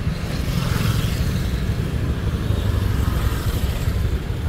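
Motorbike engine running close by with a steady low rumble.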